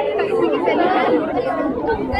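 A crowd of students chattering, many voices talking over one another at once.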